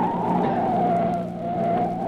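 Car tyres squealing through a hard turn over a running engine, a radio-drama sound effect. The squeal wavers and sags slightly in pitch, then fades near the end.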